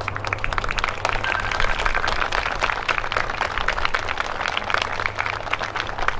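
A crowd applauding: many overlapping hand claps forming a dense, steady patter.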